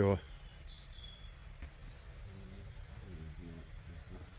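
Quiet woodland ambience with a few short, high bird chirps in the first second, then low murmured voices about halfway through.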